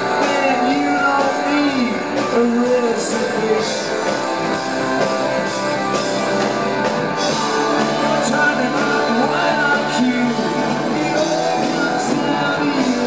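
Live rock band playing loudly through amplifiers: electric guitar, bass guitar and drum kit.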